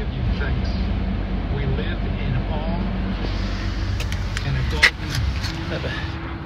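A 2012 Toyota Camry LE idling, heard from inside the cabin as a steady low hum. A couple of sharp clicks come about four and five seconds in.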